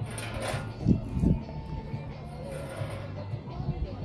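Outdoor lakeside ambience with distant music and indistinct voices, and a couple of low thumps about a second in.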